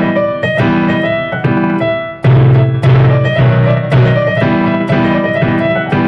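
Casio CT-X9000IN electronic keyboard in a piano tone, playing a melody in the right hand over held left-hand chords, with new notes struck about every half second to a second. A louder low chord comes in about two seconds in.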